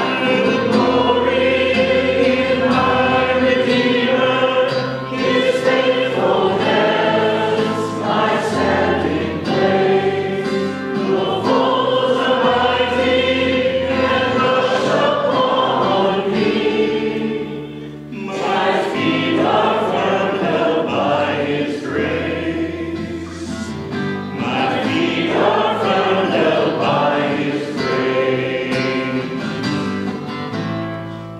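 Congregation singing a hymn together, accompanied by strummed acoustic guitar and a second guitar, with a brief break between lines about 18 seconds in.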